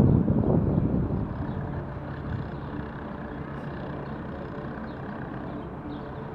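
Steady rumble of distant city traffic, a little louder in the first second.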